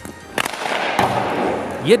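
Ice hockey shooting on an open rink: a sharp crack of a stick striking the puck, a second crack about half a second later, and a rasping hiss of skate blades scraping the ice.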